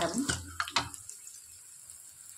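Oil sizzling faintly in an iron kadai as green chillies, seeds and turmeric fry in it. A voice speaks over the first second.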